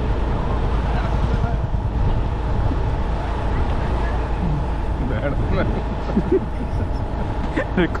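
Steady low rumble of a motorbike or scooter being ridden, engine and wind together, with a faint steady hum above it. Brief snatches of voices come in during the second half.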